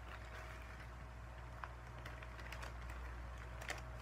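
Faint, scattered clicks and light rustling of small plastic items and packaging being handled, over a low steady hum.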